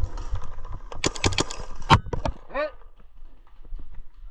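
A quick string of paintball marker shots about a second in, then one loud sharp crack near the middle, a paintball striking the player's mask, followed by a brief yelp.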